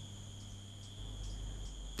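Crickets chirring steadily, with a low hum underneath.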